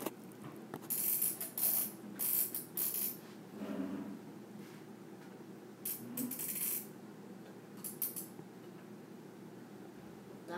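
Handling noise from the iron and shirt being worked with: several short crackly, clicking bursts, grouped about a second in, again around six seconds, and once more near eight seconds.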